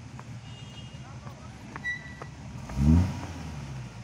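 Shaktimaan army truck's engine running at a low, steady rumble, then revving up briefly about three quarters of the way in with a rising note, the loudest moment.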